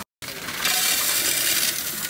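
Copper one-cent euro coins poured from a plastic jar into the perforated steel tray of a Coinstar coin-counting machine. The coins make a dense, continuous jingle as they slide and clink against the metal and each other, easing off near the end.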